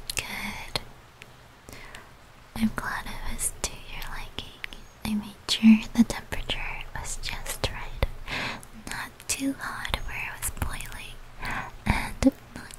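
A woman whispering close to the microphone in soft, broken phrases, with small clicks between them.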